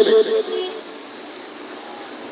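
A man's amplified voice trails off in the first moments, then a steady roadside background noise of traffic holds for the rest.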